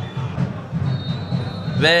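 Faint referee's whistle, a thin high tone starting about a second in and lasting under a second, signalling the second-half kick-off. A steady low background rumble runs underneath.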